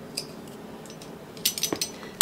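A spoon clicking and clinking lightly against dishes while garlic powder is spooned into a crock pot of soup, a single click near the start and a quick cluster of several clinks about one and a half seconds in.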